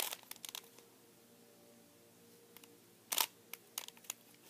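Plastic Rubik's Cube being turned by hand: quick clicks and clacks as its layers rotate, in a burst at the start and again about three seconds in, with a quiet stretch between.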